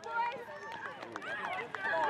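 Faint, distant voices calling and chattering around a soccer pitch over light outdoor background noise.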